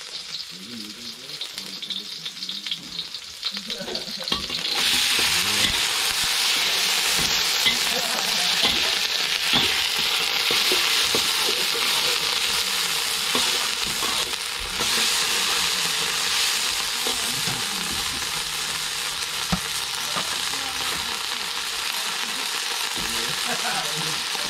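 Green beans stir-frying in a hot steel wok over a gas burner: a steady sizzle that jumps much louder about four seconds in, with the metal spatula scraping and tapping the pan as they are tossed.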